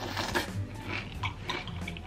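Quiet eating sounds: a metal spoon clicking a few times against a glass bowl of cereal and milk, under faint background music.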